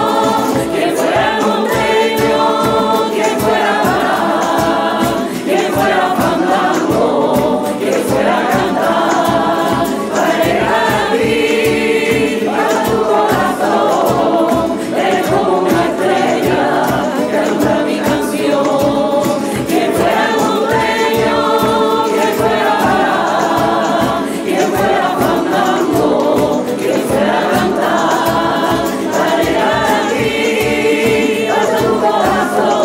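A coro rociero of women's and men's voices singing together in harmony, over strummed Spanish guitars keeping a steady rumba rhythm.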